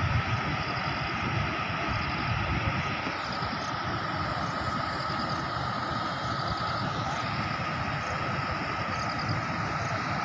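Water pouring over a dam's weir and churning below it, a steady rushing noise.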